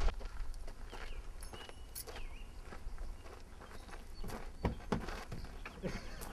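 Footsteps crunching on a gravel road, irregular and unhurried.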